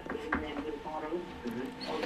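Quiet, indistinct speech in a small studio room, softer than the talk around it.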